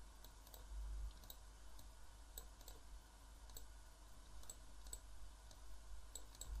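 Faint computer mouse clicks, irregular and some in quick pairs, as control points are clicked and dragged.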